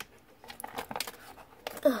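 Light taps and clicks of small toy pieces being handled on a plastic playset, with a sharp click at the very start. Just before the end a child groans "ugh".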